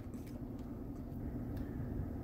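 Faint, steady low background rumble with no distinct events.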